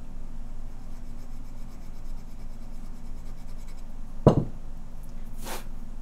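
Hand file rubbing lightly across soft solder wire in quick, faint, even strokes, squaring off its ends. About four seconds in comes a single sharp thump, then a brief clatter near the end.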